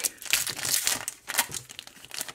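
Foil booster-pack wrapper crinkling as it is torn open by hand: a dense run of crackles that thins out and fades near the end.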